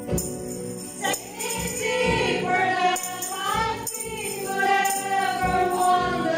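A Christian praise and worship song sung by women's voices with musical accompaniment, with tambourine jingles shaken and struck every second or two.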